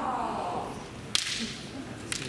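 The tail of a kendoka's kiai shout, falling in pitch and trailing off in the first half second. About a second in comes a single sharp crack of a bamboo shinai strike.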